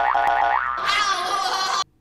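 Comic high-pitched wavering noise: a tone that rises and then holds, followed by a brighter wavering tone, cut off sharply just before the end.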